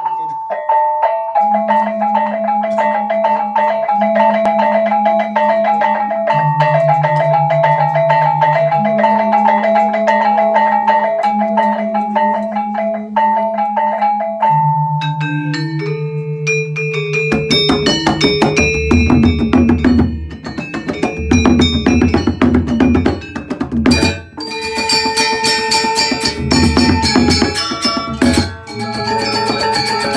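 Background music: a quick, repeating high melody over held bass notes. About halfway through it swells into a fuller, louder arrangement with a drum beat, with a brief break a little later.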